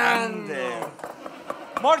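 Mostly men's voices on a cooking set; in a short gap after the first second, faint knocks of a stone pestle mashing guacamole in a volcanic-stone molcajete.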